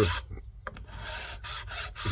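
Steel hand file rasping across the edge of a wooden bellows block, scraping off old hardened hide glue. The quick, rough strokes start about a second in after a short pause.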